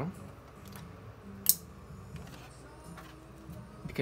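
Small handling sounds of a screwdriver, a screw and a synthesizer's plastic case being worked: one sharp click about a second and a half in and a few soft ticks, over a low steady hum.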